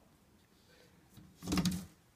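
A short rattling scrape of hard fittings being moved at a glass reptile terrarium, about one and a half seconds in.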